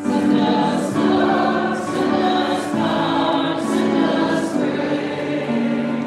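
Church congregation singing a hymn together, holding each note and moving to the next about once a second.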